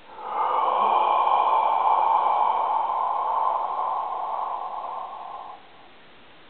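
A man's long, loud breath out through an open mouth, a breathy 'haaah' with no words. It starts suddenly, holds for about five seconds, then tapers and stops.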